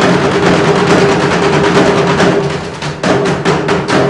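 Ensemble of Kerala chenda drums beaten with sticks in fast, dense strokes, with a steady drum tone underneath. The playing softens briefly just before three seconds in, then comes back loud.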